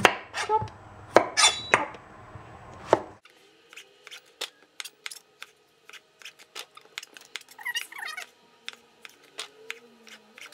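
Santoku-style chef's knife slicing zucchini on a plastic cutting board: sharp knocks of the blade striking the board with each cut. The first few strokes are loud; from about three seconds in the cuts are quieter and come about two or three a second.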